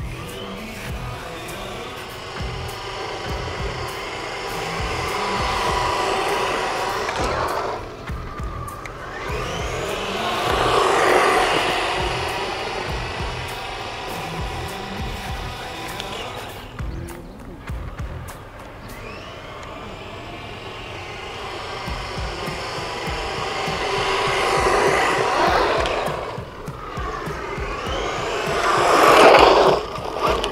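DEERC 9200E RC truck's electric motor and drivetrain whining as the car is run flat out past the microphone four times, its pitch rising as it approaches and falling as it moves away, with wind rumbling on the microphone.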